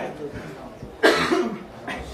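A single cough about a second in, sudden and loud, over quieter background voices.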